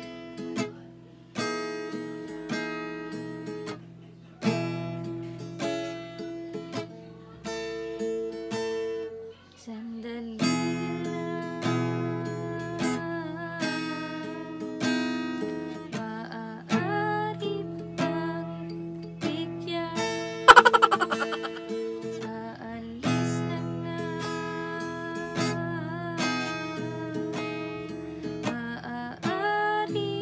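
Acoustic guitar with a capo strummed in chords in a steady rhythm, with a woman singing along at times. About twenty seconds in comes one sharp, loud strum.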